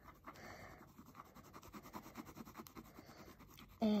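Pen tip scratching on paper in rapid short back-and-forth colouring strokes.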